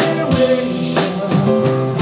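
Live band playing an instrumental passage: guitar over a drum kit, with drum hits about every half second.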